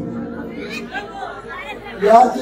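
Quiet voices and chatter, heard in a large hall.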